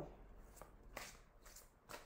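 Near silence, with a few faint ticks from a deck of tarot cards being handled.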